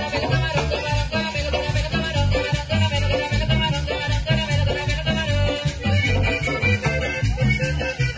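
Live tropical band playing: accordion over electric bass and a drum kit with a steady dance beat.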